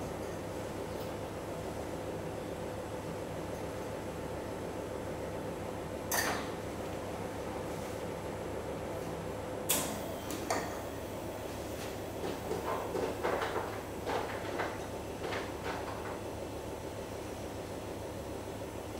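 Steady low room hum with a faint held tone, broken by two sharp knocks, one about six seconds in and one about ten seconds in, then a run of small soft handling noises.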